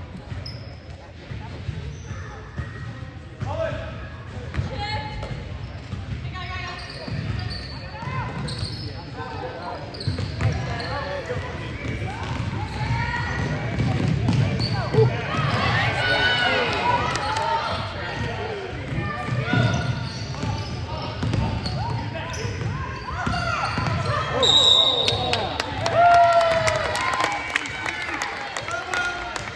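Basketball game on a hardwood gym floor: the ball bouncing as it is dribbled, mixed with players' and spectators' voices calling out. It grows louder about halfway through as play runs up the court.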